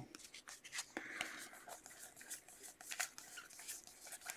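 Faint rustling and light clicks of a stack of trading cards being handled and flipped through by hand.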